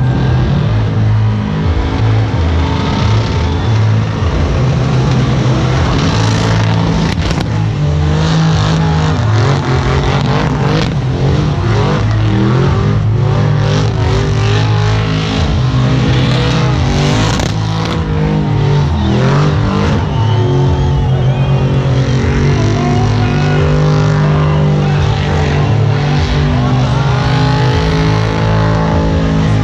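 Car engine revving hard at high rpm during a burnout, its pitch rising and falling as the throttle works, over the rushing noise of spinning tyres.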